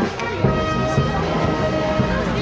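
Band music with brass and a steady drum beat, about two beats a second.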